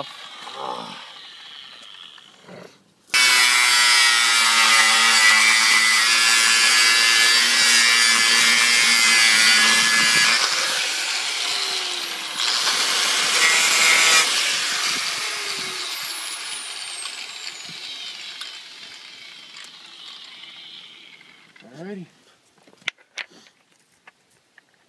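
Electric angle grinder with a 40-grit flap disc grinding down a cut metal wheel hub. It starts abruptly about three seconds in, runs loud and steady with a brief dip partway, then fades out gradually over several seconds.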